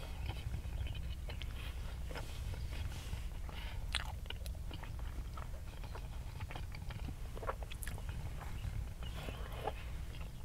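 Close-up mouth sounds of a person chewing a Burger King ham, egg and cheese breakfast sandwich: scattered wet clicks and smacks. A steady low hum runs underneath.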